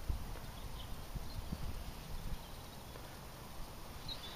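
Low, uneven rumble of wind buffeting the microphone in an open field, with a few faint knocks from the camera and coin being handled.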